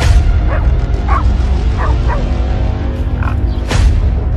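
Hunting dogs chasing a wild boar, giving about five short yelping cries over loud background music with heavy bass. A sharp swish sweeps through near the end.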